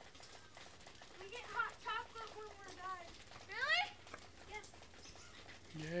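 A child's high voice calling out in a run of short wordless cries, then a sharp rising squeal just past the middle, with a few more short calls after.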